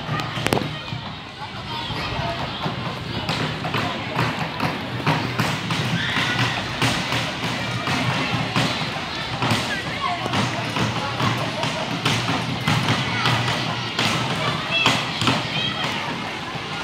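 Voices of people at a football match talking and calling out, with scattered knocks and thuds; a sharp thud about half a second in.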